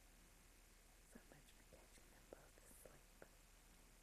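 Near silence: camcorder room tone with a low hum and a few faint ticks.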